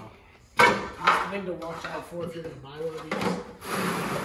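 Metal mower-deck brackets dropped into a plastic bucket with a sharp clatter, followed by rattling and scraping as loose parts are rummaged through in the bucket.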